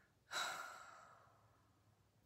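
A woman's breathy sigh, starting a moment in and trailing off over about a second.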